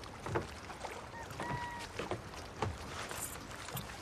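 Water lapping and sloshing against a wooden dock with outdoor wind, broken by several soft knocks, the strongest about a third of a second in. A brief faint high two-note tone sounds a little over a second in.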